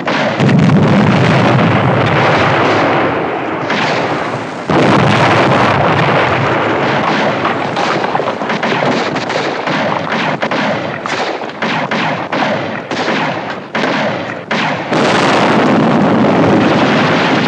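Battle sound effects: rapid, overlapping rifle fire with explosions. Heavy blasts come about half a second in, near five seconds in and again near the end, with volleys of shots between them.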